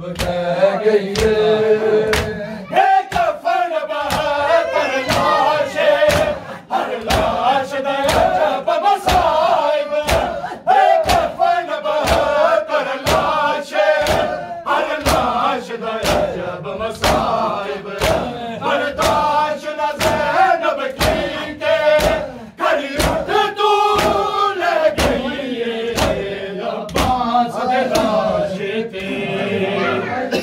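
A group of men chanting a Muharram noha (lament) together, with the sharp slaps of bare-handed chest-beating (matam) keeping a steady beat beneath the voices.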